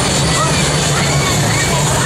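Loud, steady fairground din from a Break Dance ride in motion: riders' short shouts and crowd voices over a low hum and pulsing bass.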